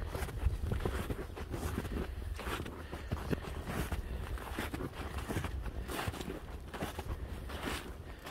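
Footsteps crunching through snow at an uneven walking pace, a step about every half second to a second.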